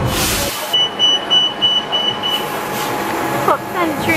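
A shuttle bus's electronic warning beeper: a run of quick high beeps, about four a second, lasting under two seconds, over a steady hum of traffic and people.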